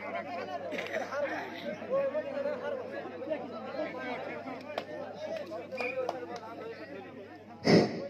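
Spectators talking and chattering around a volleyball court, with many overlapping voices and a steady low hum beneath. A single loud, sharp thump comes near the end.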